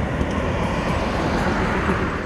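Police motorcycle passing along the road at speed, a rush of engine and tyre noise that swells about a second in and fades near the end.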